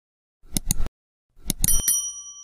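Subscribe-button animation sound effect: a few quick mouse clicks, then more clicks and a short bell ding whose ring runs on briefly near the end.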